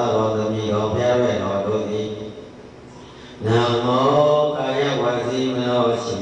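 Buddhist monk chanting a recitation in a low, steady male voice into a microphone, with a pause of about a second midway before the chant resumes.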